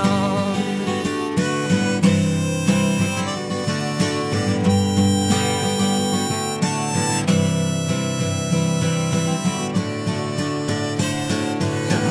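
Instrumental break in a folk song: harmonica playing held notes over strummed acoustic guitar.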